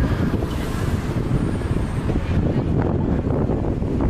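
Wind buffeting the microphone of a camera carried on a moving bicycle: a steady, loud low rumble.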